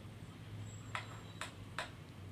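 Three light, sharp clicks about 0.4 s apart from a candle wick trimmer snipping the wick, over a faint steady low hum.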